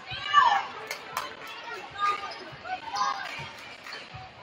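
Basketball being dribbled on a hardwood gym floor during live play, low thumps of the ball under voices calling out, with a loud shout about half a second in.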